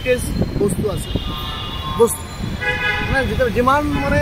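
Vehicle horns honking in street traffic: one held honk about a second in and a second about two and a half seconds in, over steady traffic noise.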